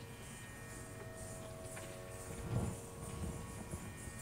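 Faint, steady sruti drone of the Carnatic accompanying ensemble holding one pitch, with a few soft low thumps about halfway through.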